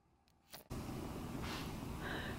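Digital silence, then faint steady room tone, an even hiss, starting under a second in.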